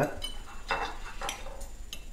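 Steel knife and fork cutting through a slice of fried black pudding with a crisp crust on a ceramic plate: several light scrapes and clinks as the knife meets the plate.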